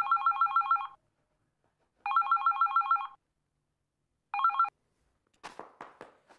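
Mobile phone ringing with a rapidly warbling electronic ring: two rings of about a second each, then a third cut short as the call is answered. A few soft handling clicks follow near the end.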